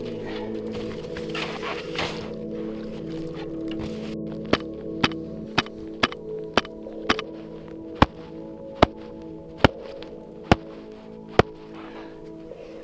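A series of about eleven sharp taps on a shovel blade laid on a snow column, a compression test of the snowpack. The taps come about twice a second at first, then more slowly, over a bed of background music with steady held notes.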